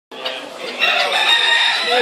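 A cockerel crowing: one long, held call starting a little under a second in, over the background clamour of a poultry show hall.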